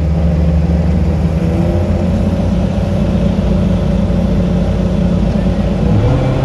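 Kato mobile crane's diesel engine running steadily under load, heard from inside the cab, as the crane hoists a slung bundle of steel shoring props. The engine note rises slightly about two seconds in and holds.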